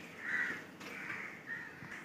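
A crow cawing faintly, about three short caws a little over half a second apart.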